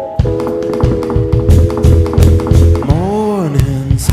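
Live indie rock band playing: drum hits and bass under a held three-note chord that swoops up and back down in pitch about three seconds in.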